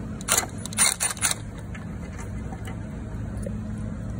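A few short, sharp metallic clicks and clatters in quick succession in the first second and a half, as the controller bolt and its hardware are worked loose and handled, over a steady low hum.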